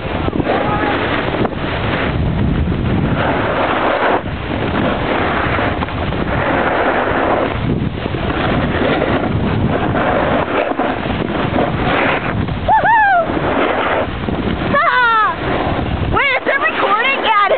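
Loud, steady wind rushing over the microphone of a camera carried downhill on skis. Near the end a voice calls out briefly twice.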